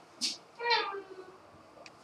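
A brief breathy hiss, then a short high vocal cry that falls in pitch, from a person at play.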